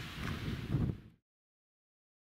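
Wind buffeting the microphone, a low gusting rumble with a faint hiss above it, which cuts off to dead silence about a second in.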